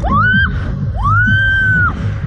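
A rider screaming on a slingshot ride: a short rising scream, then one long high scream held for over a second. Loud music with a steady beat plays underneath.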